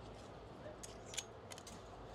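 Clothes hangers clicking as shirts are pushed along a clothing rack: a handful of short, light clicks in the second half, the loudest about a second in.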